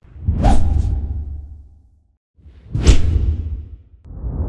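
Two whoosh sound effects from an animated end-card graphic. The first comes at the start and the second about two and a half seconds in. Each swells quickly, fades over about a second and a half, and has a deep rumble underneath.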